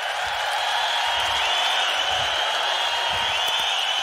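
A theatre audience laughing and applauding in a steady wash of noise, with a thin high tone running over it.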